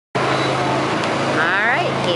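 Steady low hum of a small engine idling, typical of a garden tractor waiting at the pull sled, with a voice briefly calling out near the end.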